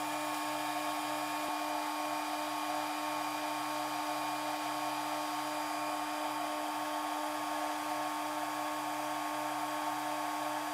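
Spindle of a DMC2 desktop CNC mill running steadily at about 18,000 RPM, a constant high whine with a lower hum beneath it.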